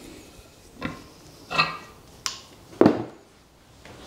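Metal clunks and clinks of a milling vice's handle being pulled off the screw's hex end and set down on a steel trolley: about four separate knocks, one with a short metallic ring, the loudest about three seconds in.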